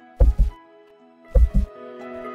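Background music of held notes with a deep double thump in the bass, like a heartbeat, sounding twice about a second apart.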